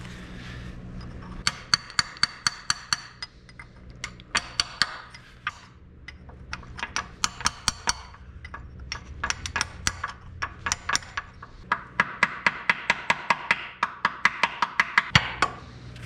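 Hammer tapping to bend back the tabs of a metal locking ring on a tractor's torque amplifier unit: runs of sharp metallic taps, about four or five a second, with short pauses between the runs.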